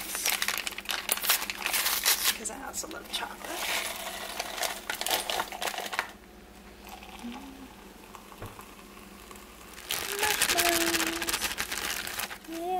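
Plastic-foil packet of hot cocoa mix crinkling and rustling for several seconds as it is torn and shaken out into a ceramic mug. A quieter stretch follows while water is poured in, then a plastic bag of mini marshmallows crinkles loudly near the end.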